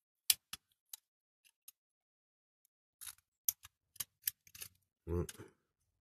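Craft knife blade picking and prying at small plastic parts lodged in a die-cast model car body: sharp clicks, a few scattered ones in the first two seconds, then a quicker run of them about three seconds in.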